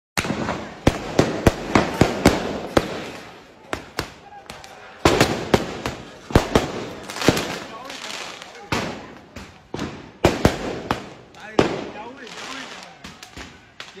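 Weapons fire: many sharp shots and bangs in irregular clusters, sometimes several a second, each with a short echoing tail, and people shouting between them.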